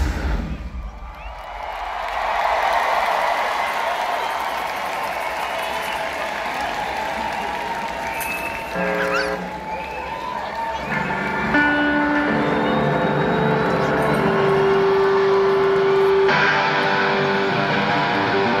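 A live rock band stops on a final beat and an arena crowd cheers and screams. From about nine seconds in, an electric guitar picks out single notes and holds long tones between songs.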